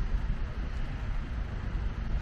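Steady outdoor city background noise: a low rumble with a faint hiss above it, and no single event standing out.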